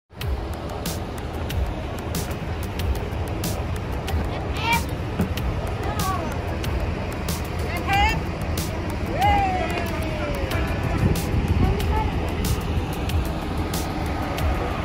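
Large tour coaches' diesel engines idling with a low steady rumble, with a few short rising-and-falling calls over it and a regular clicking.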